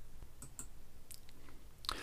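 A few faint, short clicks over quiet room tone.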